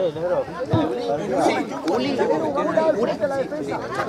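Several people talking at once close by, an overlapping chatter of voices in Spanish.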